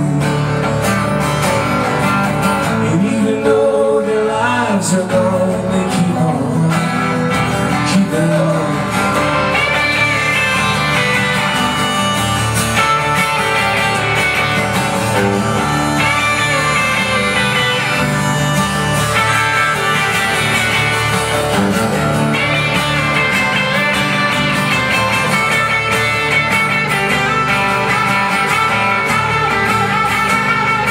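Live acoustic and electric guitar duo playing an instrumental passage of a folk-rock song: a strummed acoustic guitar under an electric guitar lead.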